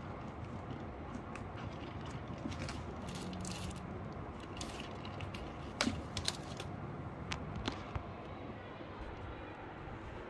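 Irregular light clicks and taps over a steady low background noise, with a small cluster of sharper clicks about six seconds in.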